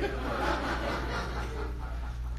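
Audience laughing, fading out about a second and a half in, over a steady low hum.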